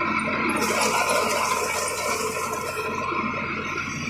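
John Deere 5075E tractor running steadily while working the soil, with a rushing hiss that comes in about half a second in and fades near three seconds.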